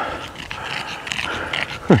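A pug panting and breathing noisily.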